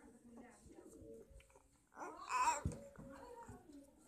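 Infant cooing and babbling, with a louder, high-pitched vocal sound about halfway through.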